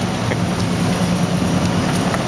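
Rear-loader garbage truck's diesel engine idling steadily, a low even hum, with a few faint light clicks.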